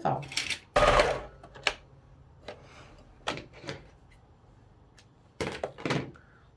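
Pfaff sewing machine stitching in short bursts, the longest about a second in, with fabric being handled between them.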